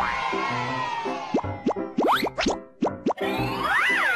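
Bright children's TV intro jingle with a steady beat. About a second in, the music thins out into a run of quick, upward-sliding plop sound effects. It then resumes near the end with a whistle-like glide that rises and falls.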